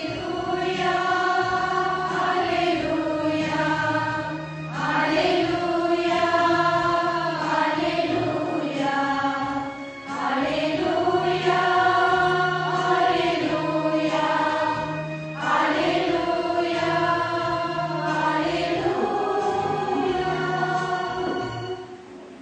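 A choir singing a slow church hymn with instrumental accompaniment, in long held phrases; the singing stops just before the end.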